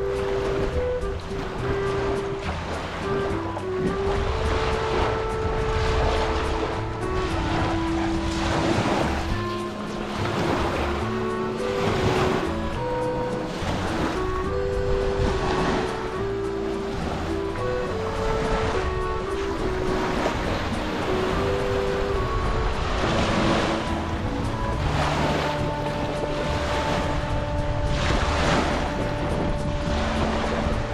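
Background music with a melody of held notes stepping up and down, over small lake waves washing onto a shore.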